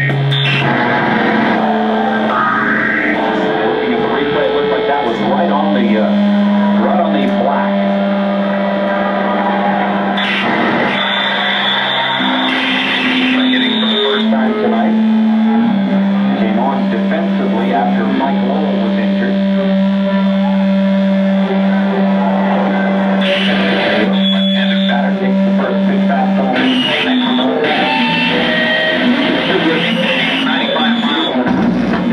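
Two electric guitars played through effects pedals in a noise improvisation: long droning held tones over a dense wash of noise. The drone holds one low pitch for several seconds, shifts, and settles on another that holds for about ten seconds.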